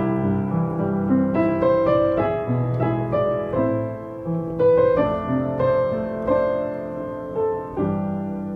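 Background piano music: slow, gentle piano playing with notes struck one after another.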